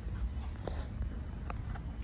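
Footsteps on a hard tiled floor, a few separate taps, over a steady low rumble of room noise.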